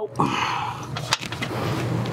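Hands working a hose fitting on the engine's intake manifold: a brief rubbing scrape just after the start, then a few light clicks, over a steady low hum.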